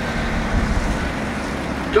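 Steady low rumble of road traffic, with no single event standing out.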